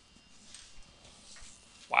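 Near silence, with only room tone and a few faint small noises, then a man's loud exclaimed "Wow!" right at the end.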